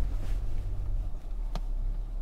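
Steady low rumble inside the cabin of a 2023 Skoda Kodiaq moving slowly over a rough dirt off-road track, with a single sharp knock about one and a half seconds in.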